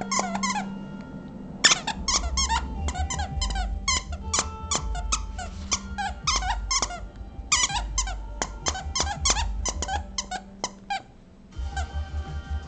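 A dachshund chewing a plush dinosaur toy, working its squeaker over and over: runs of short, high squeaks, several a second, broken by brief pauses and stopping near the end.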